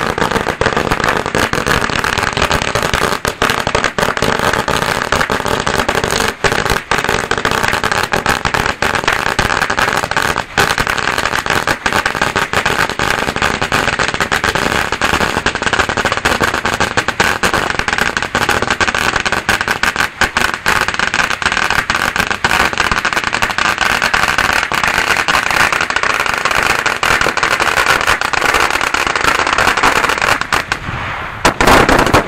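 A 5,000-shot firecracker string going off, a rapid unbroken stream of loud bangs that keeps on without a pause.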